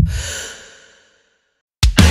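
A sharp, breathy sigh that starts suddenly and fades out within about a second, followed by a short silence. Near the end, a heavy metal band comes in loud with distorted guitars and drums.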